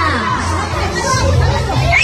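Children's voices and people talking in a room, with music playing underneath.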